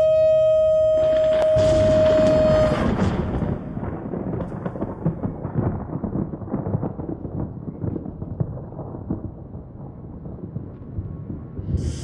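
A horn blast holds one high note for the first few seconds. A deep rumble of thunder builds in about a second in and rolls on with crackles, slowly dying away. The horn sounds again right at the end.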